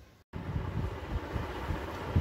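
A brief dropout to silence just after the start, then steady low rumbling background noise with no distinct events.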